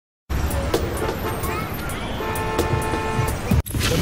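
Opening soundtrack of a TV documentary series: a dense mix of music, low rumble and sharp hits that starts abruptly out of silence, with a steady horn-like tone a little after two seconds in and a brief cut just before the end.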